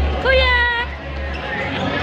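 Shopping-mall ambience: shoppers' chatter with background music. A single high note is held for about half a second just after the start, over a low rumble that fades out about a second and a half in.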